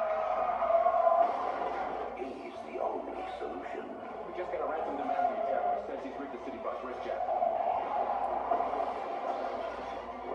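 Film trailer soundtrack playing from a tablet's small built-in speaker and picked up across the room, thin and muffled, with indistinct voices in it.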